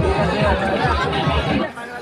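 A man's voice talking over fair-ground chatter and a low rhythmic pulsing, which cuts off suddenly near the end.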